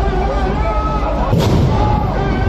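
A single sharp bang with a heavy low thud about one and a half seconds in, over continuous music with a wavering pitched melody and crowd babble.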